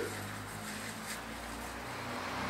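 Steady low background hum with faint noise and no distinct event: room tone between words.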